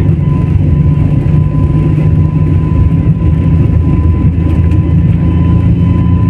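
Jet airliner heard from inside the cabin during the takeoff roll: a loud, steady low rumble of the engines at takeoff power and the run down the runway, with a thin steady whine on top.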